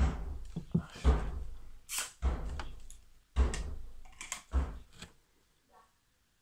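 A run of dull thumps and knocks, about one a second, each trailing off in a short rustle, ending about five seconds in.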